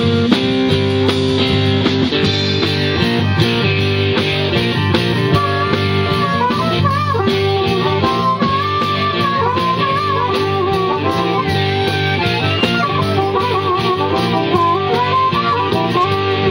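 Live blues-rock band playing with electric guitar and drums. From about five seconds in, a harmonica plays a lead of wavering, bent notes over the band.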